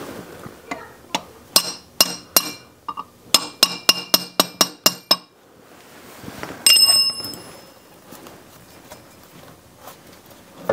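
About a dozen sharp, ringing blows of a hammer on a steel punch, driving the input shaft of a Ford 4000 tractor transmission through its bearing and gear; the blows quicken to about five a second, then stop. Near the end comes one louder ringing metallic clank.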